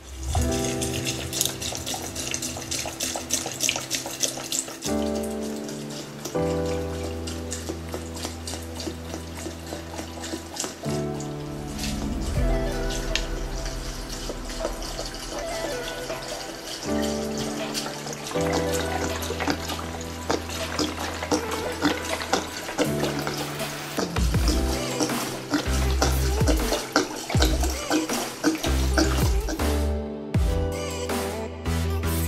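Background music: an electronic track with held chords that change every few seconds over a fast, busy high-pitched beat.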